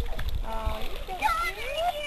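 Indistinct voices of people bathing in a hot spring pool, with water splashing.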